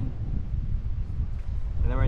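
Wind buffeting the microphone: an uneven low rumble with no tones or clicks in it.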